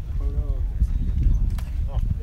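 Wind rumbling on the microphone on an open golf driving range, with a person's voice briefly near the start and two sharp clicks in the second half.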